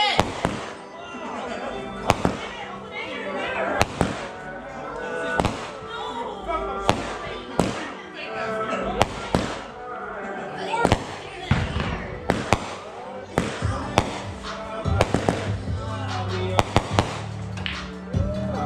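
A small ground firework throwing sparks, going off in sharp pops every second or two, with music playing in the background.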